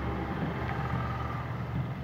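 Steady low mechanical hum, like a machine or engine running, with no distinct strokes or changes.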